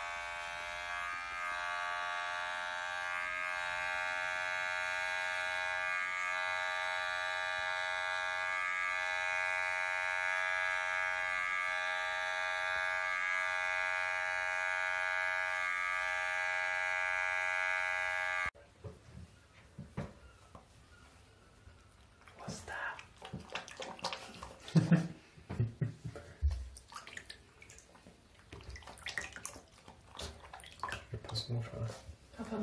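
Handheld electric pet clipper running with a steady buzz while it trims a cat's paw fur, with slight catches in the buzz every couple of seconds; it cuts off suddenly about 18 seconds in. Then scattered knocks and splashes from a dog in a bathtub follow.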